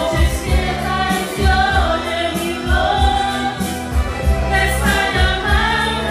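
A woman singing a Spanish-language ballad into a microphone over a karaoke backing track, with held bass notes and a steady drum beat.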